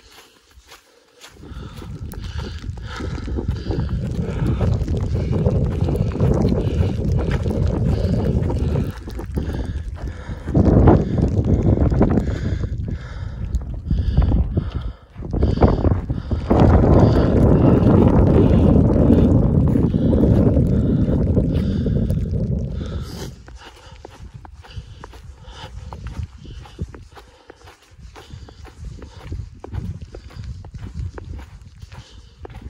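Wind buffeting the microphone in a loud, gusting low rumble. It starts about a second in, drops out briefly around halfway, and dies down about three-quarters through. Footsteps on thin snow run underneath and are plain once the wind eases.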